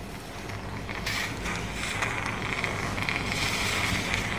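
Operating-theatre sound from a live brain-surgery feed: a steady hiss that comes up about a second in, with faint mechanical clicks and creaks of surgical instruments.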